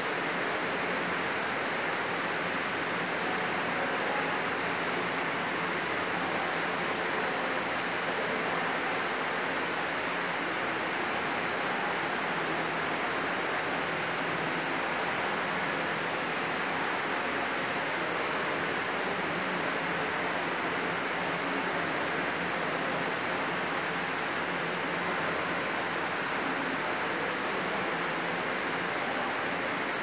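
A steady, even rushing noise, like a hiss, that holds unchanged throughout.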